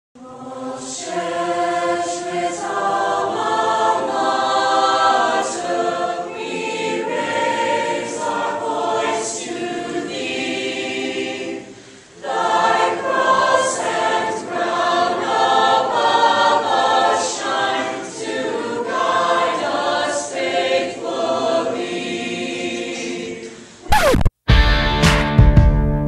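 A choir singing held chords, with a brief break about halfway through.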